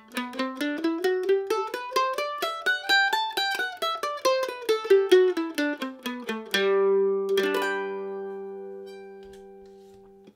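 Mandolin played with a flatpick: an evenly picked scale, each note picked twice, climbing in pitch and then coming back down. About six and a half seconds in it ends on a strummed chord that rings and fades, struck again about a second later.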